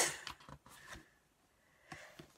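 A short breathy laugh at the start, then faint rustling and scraping of a paperback book being handled, ending in a small click.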